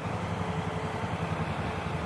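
A vehicle engine running steadily, a low even hum.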